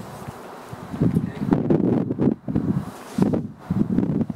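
Muffled, indistinct voices picked up off-microphone in a meeting room, starting about a second in.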